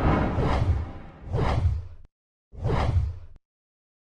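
Whoosh sound effects of a logo intro: three rushing swells with a low rumble under them, about a second apart, each cutting off suddenly.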